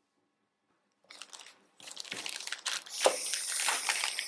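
Clear plastic bags of rubber loom bands crinkling and rustling as they are handled. The sound starts about a second in and grows louder in the second half.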